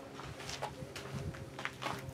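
A few short knocks and scuffs from a large stretched canvas being tilted up from the floor, over a faint steady hum.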